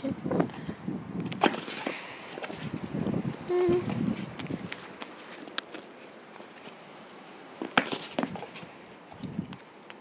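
A dog moving about on stone paving slabs: scattered light clicks and scuffs, the sharpest about a second and a half in and near the end. A short pitched sound comes about three and a half seconds in.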